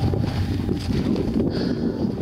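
Wind buffeting a camera microphone, a rough irregular rumble that slowly eases.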